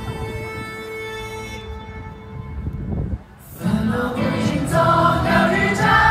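Live concert music recorded from the audience: a song intro of sustained synth chords over a low pulse, with a brief drop just after three seconds in. Then the full backing comes in loud, with wavering sung voices.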